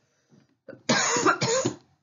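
A woman coughing: a short fit of about a second, starting about halfway in.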